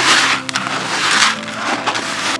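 Dry groundbait and pellets stirred by hand in a plastic bucket: gritty swishing strokes, about three in two seconds, over background music.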